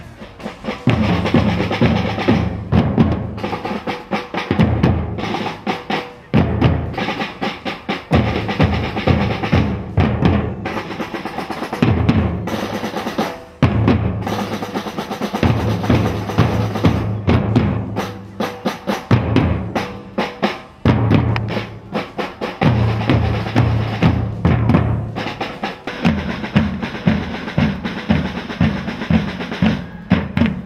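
A street drumming band playing snare drums and bass drums together in a fast, steady rhythm. The deep drums come in phrases of about two seconds with short breaks between them.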